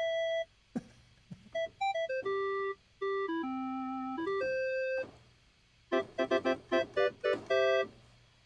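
Yamaha DX7 FM synthesizer playing its factory clarinet patch: a single-line melody of held and quick notes, then a few short repeated chords near the end.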